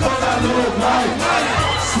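A hip-hop track with deep bass notes playing loudly through a club sound system, with a crowd's voices shouting over it.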